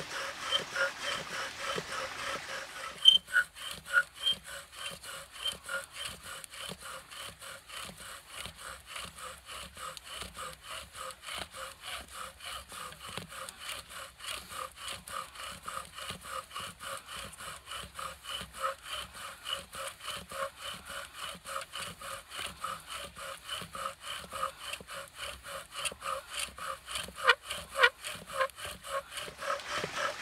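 Bow drill in use: the bow sawn back and forth spins the wooden spindle in the fireboard, a rhythmic wood-on-wood grinding with a squeak on each stroke, a few strokes a second. The strokes get louder near the end.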